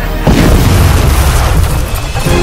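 A deep cinematic boom hit in the soundtrack music, striking about a quarter second in and rumbling on with a hiss until the music's melody returns at the end.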